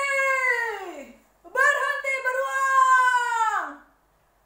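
A woman's voice giving two long, high shouts, each falling in pitch as it trails off. It is an acted, drawn-out cry of a character calling out.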